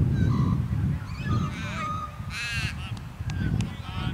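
Birds calling, with a loud, harsh, crow-like call about halfway through, over a steady low rumble. Two sharp clicks come near the end.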